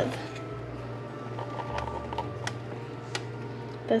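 A few light clicks and taps from a plastic blender jar being lifted and handled, over a low steady hum.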